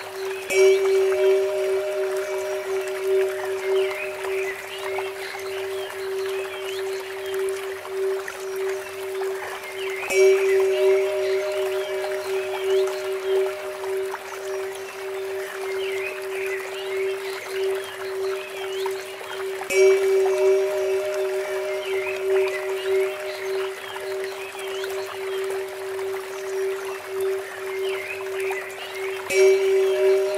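A steady 432 Hz drone tone, with a Tibetan temple bell struck four times, about every ten seconds, each strike ringing with high overtones. Under it runs a steady trickle of water from a bamboo fountain.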